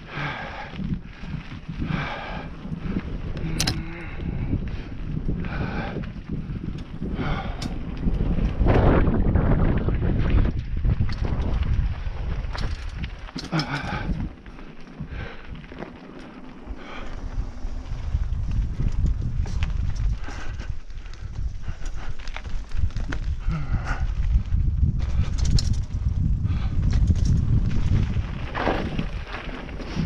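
Mountain bike rolling along a dirt singletrack: tyre rumble and wind on the microphone, with frequent short rattles and knocks from the rough ground. It eases briefly a little before halfway, then picks up again.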